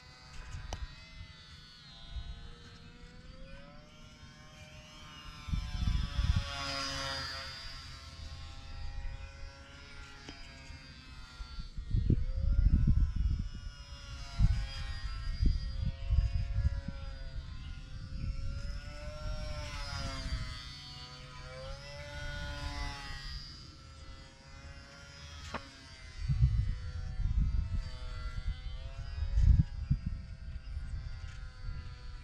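Buzz of a HobbyZone UMX Sport Cub S micro RC plane's small geared electric motor and propeller, rising and falling in pitch throughout. Gusts of wind rumble on the microphone several times, loudest about twelve seconds in and near the end.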